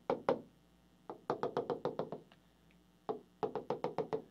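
Pen tip tapping and clicking on the glass of a touchscreen whiteboard while writing and drawing dashed lines: a couple of taps, then a quick run of about ten, then a few more near the end.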